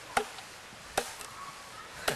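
Sharp chopping strikes of a cutting tool biting into wood: one just after the start, another about a second in, and a lighter one right after it.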